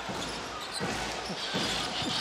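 Basketball arena sound: crowd murmur and low hall rumble, with a few faint bounces of the ball on the hardwood court.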